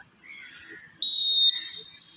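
Referee's whistle blown once about a second in, a loud, steady, high-pitched tone held for about half a second and then trailing off more weakly: the signal for the serve in a volleyball match.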